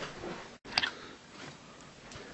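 A few faint clicks and knocks of a handheld camera being picked up and moved, with the sound cutting out completely for a moment just before the first click.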